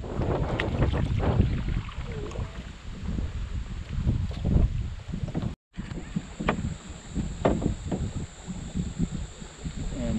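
Canoe paddling with wind buffeting the microphone, water sounds and a few sharp knocks. After a cut about halfway through, a steady high insect buzz joins in.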